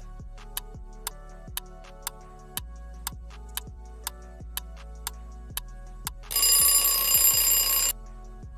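Quiz countdown-timer sound effect: steady ticking, about two ticks a second, over a low background music bed. About six seconds in, a loud alarm-clock bell rings for nearly two seconds, signalling that time is up.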